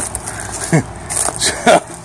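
A man chuckling: two short voiced bursts of laughter with breathy exhales between them.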